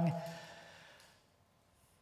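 The tail of a man's spoken question trailing into a breathy exhale, a sigh that fades away over about a second, followed by near silence.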